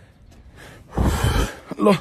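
A man's short, sharp breath close to the microphone, about a second in and lasting half a second, before he starts to speak.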